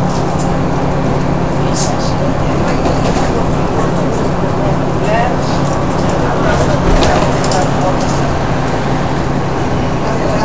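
Single-decker bus heard from inside the cabin while driving: a steady engine drone with road noise, and occasional short rattles and knocks from the bus body.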